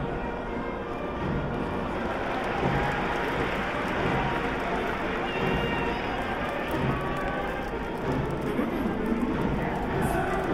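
A large baseball-stadium crowd, with many voices and music from the stands mixed into a steady, dense din.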